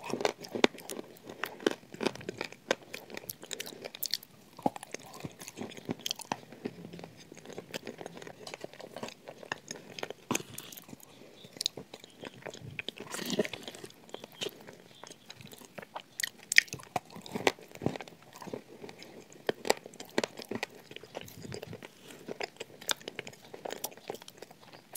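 Close-miked crunching and chewing of shortbread biscuit: a running series of small crisp cracks and mouth sounds.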